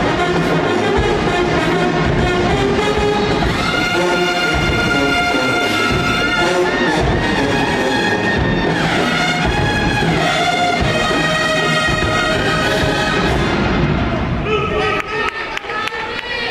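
Brass band with drums playing a loud, brass-heavy dance tune. The horns cut off about two seconds before the end, leaving a few sharp drum hits.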